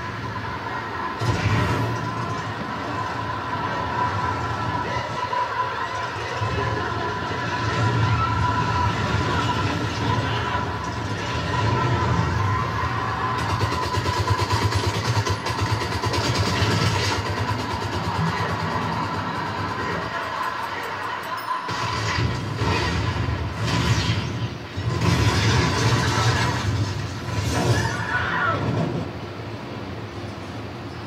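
Film soundtrack: music with voices mixed in, running throughout, with a brief drop in the low end about two-thirds of the way through.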